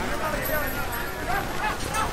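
Several men's voices shouting and calling out over outdoor background noise, in two short bursts.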